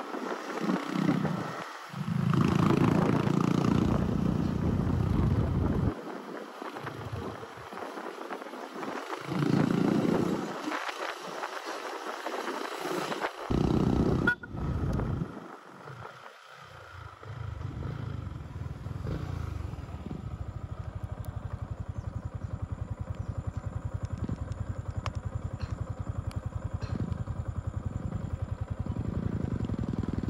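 Wind buffeting the microphone while a motorcycle is ridden, then a Yamaha motorcycle engine idling steadily in neutral through the second half.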